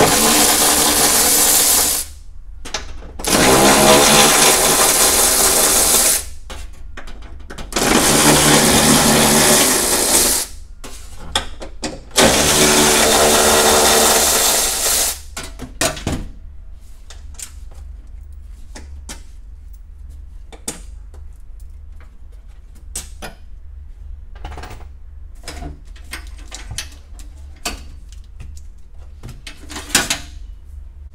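A cordless power tool with a socket on an extension runs four times for two to three seconds each, spinning out the bolts that hold a Toyota Camry Hybrid's battery pack. After that come scattered light clicks and knocks of the tool and metal parts being handled.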